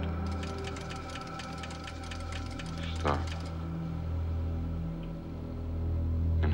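Science-fiction film sound effect of the Esper photo-analysis machine carrying out a voice command to track across an image: a fast run of electronic clicks for about three seconds over a steady low electronic hum, which then carries on alone.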